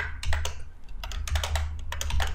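Typing on a computer keyboard: an irregular run of keystroke clicks over a low hum.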